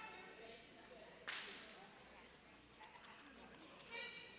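A single sharp crack, like a slap or clap, about a second in, dying away over half a second in the echo of a large hall. Faint distant voices and a few light high ticks follow.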